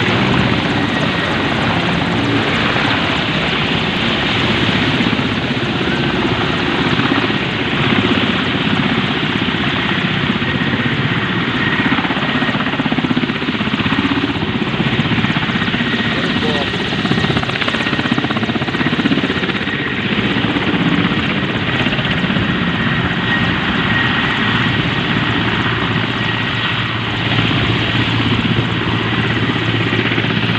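Helicopter flying low overhead: its rotor and engine run loud and steady, with an even beat from the blades.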